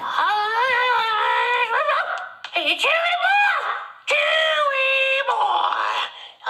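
A person's voice giving three long, high-pitched hollered calls, each held for a second or more; the first wavers and falls, the last is held level.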